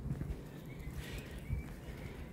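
Footsteps of a person walking over bare rock slabs and grass: a few soft, dull thuds.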